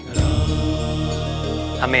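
Background score of sustained held tones, chant-like, swelling in suddenly just after the start and holding steady. A man's voice begins right at the end.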